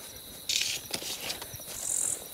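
A steady chorus of night insects chirping in a high, constant tone. A brief rustling swish about half a second in is the loudest sound.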